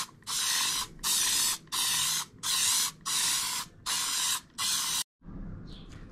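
Aerosol spray can sprayed onto a cloth in about seven short blasts, each about half a second long, with brief pauses between. The spraying cuts off about five seconds in.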